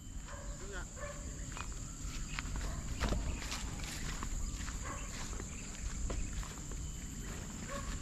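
Outdoor ambience of someone walking through grass, with scattered light footsteps and low wind rumble on the microphone over a steady high-pitched drone. A few faint short calls or voices sound in the first second or so.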